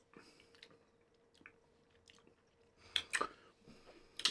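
Faint mouth sounds of beer tasting: sipping, swallowing and lip smacking, with two sharper clicks about three seconds in.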